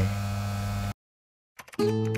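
A steady low electrical hum that cuts off suddenly about a second in. After a short gap of dead silence, music with quick plucked notes starts near the end.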